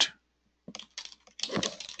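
Typing on a computer keyboard: a quick run of keystrokes starting a little over half a second in.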